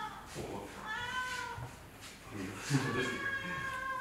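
A domestic cat meowing twice: a short call about a second in, then a longer, drawn-out meow near the end.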